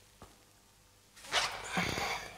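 A woman's heavy, forceful exhale, a breathy rush starting about a second in, taken during a vigorous yoga flow. Before it, a single faint tap.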